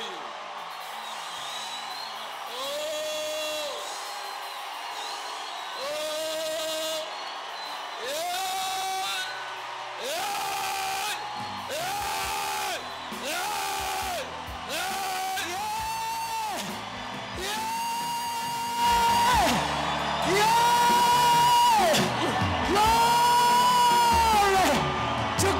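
A congregation shouting at the top of their voices, with a lead voice giving a series of long held cries about a second each, climbing step by step in pitch and growing louder towards the end. Steady crowd noise runs underneath.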